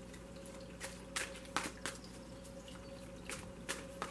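A tarot deck being shuffled by hand, giving about half a dozen short, irregular card snaps over the steady trickle of a small tabletop water fountain, with a faint steady hum under it.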